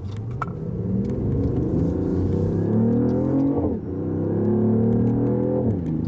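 BMW i8's turbocharged three-cylinder petrol engine pulling hard under full acceleration in sport mode, heard from inside the cabin. The engine note climbs steadily and drops sharply at two upshifts, one about halfway through and one near the end. The driver suspects the note is partly played through the interior speakers.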